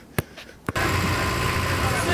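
Two sharp taps, then from under a second in, the steady engine and road rumble inside a moving bus, with voices over it.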